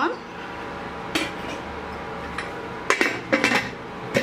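An aluminium pressure-cooker lid is put on and fitted onto its pot with a few separate metal clinks and clanks. The loudest cluster comes about three seconds in.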